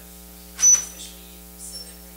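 Steady electrical mains hum and buzz from the sound system, with faint distant speech and a short, loud noisy burst about half a second in.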